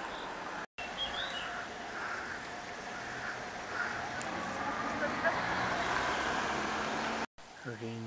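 Outdoor ambience picked up by a camcorder's microphone: a steady hiss with a faint low hum that swells in the middle. Two short drop-outs to silence, about a second in and near the end, where clips are joined.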